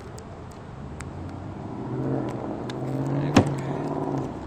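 An SUV's engine running as it drives up close, growing louder over the second half. A sharp click a little after three seconds in is the loudest sound, with a few faint clicks earlier.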